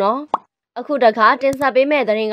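A woman's news narration in Burmese, broken about a third of a second in by a short rising pop sound effect and a brief gap before the voice resumes. A couple of sharp clicks sound under the voice at about one and a half seconds.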